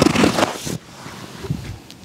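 Gi fabric rustling as a grappler shifts his weight and sits back off his partner on the mat, a loud brushing rustle in the first second that then dies down to low room noise.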